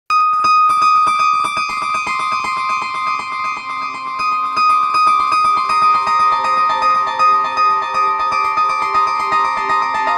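Background music: held electronic keyboard tones over a fast ticking pulse.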